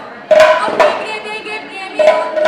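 Women's voices singing Dihanaam, the Assamese congregational devotional chant, entering with a held sung line about a third of a second in. Two sharp percussive strikes come with the entry, under a second in.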